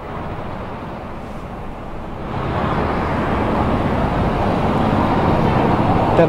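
Motor vehicle noise outdoors: a steady engine-and-road noise that grows louder from about two seconds in, as a vehicle comes closer.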